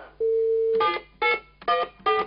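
A desk telephone gives a steady dial tone for about half a second, then three short beeps, one for each key pressed as a number is dialled.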